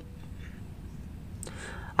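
A pause in the narration: faint low background noise, with a short mouth click about a second and a half in, then a soft intake of breath just before speech resumes.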